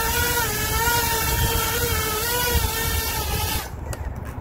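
5-inch FPV quadcopter's DYS Sun-Fun 2306 brushless motors and props whining at a steady, slightly wavering pitch over a hiss. The sound cuts off sharply about three and a half seconds in as the quad is disarmed, followed by a few faint clicks.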